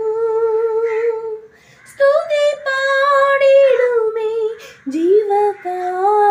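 A woman singing a Malayalam Christian worship song without accompaniment, holding long drawn-out notes with short breath pauses, one about a second and a half in and another near the end.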